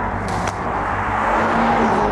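A car passing close by at speed, its engine and tyre noise swelling to a peak near the end. There is a brief sharp sound about a third of a second in.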